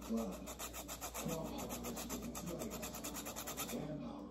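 Lime peel being zested on a hand-held rasp grater: quick, evenly repeated scraping strokes, several a second.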